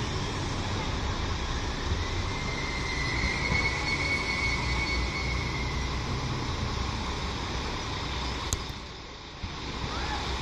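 Alstom Coradia LINT 54 diesel multiple unit running slowly in toward the platform with a steady low engine and rail rumble. A high, steady brake squeal sounds from about two to six seconds in.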